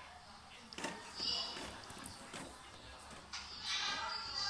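Quiet room sound with faint, indistinct voices and a light knock about a second in.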